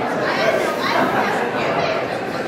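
Indistinct background chatter of many people talking at once, steady throughout, with no single voice standing out.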